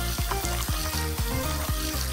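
Egg frying in a pan, a steady sizzle, under background music with a steady beat of about four drum strokes a second.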